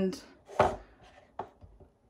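A short scrape and a sharp knock of things handled on a kitchen counter, about half a second and a second and a half in.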